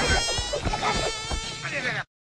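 A fly buzzing close up, a steady high whine that wavers up and down in pitch.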